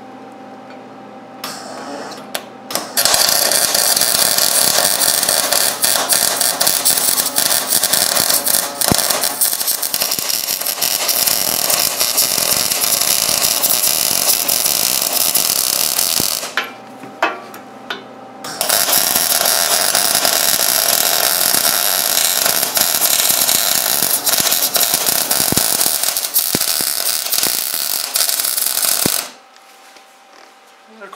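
Wire-feed (MIG) welding arc crackling steadily as a collar is welded in solid over its tack welds on a rear-blade angle-pin mount. There are a couple of brief arc starts about two seconds in, then two long beads: one of about thirteen seconds, a short pause, and one of about ten seconds that stops shortly before the end.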